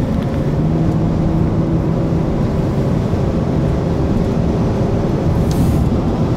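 Steady road and engine noise inside a moving car's cabin: a low rumble with a steady hum, and a brief hiss near the end.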